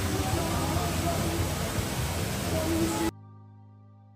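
Steady rushing of a waterfall mixed with background voices and music, cut off abruptly about three seconds in, leaving a held musical chord that slowly fades.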